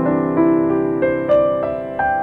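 Grand piano played solo: a slow melody of single notes stepping upward, about three notes a second, over held lower notes that ring on.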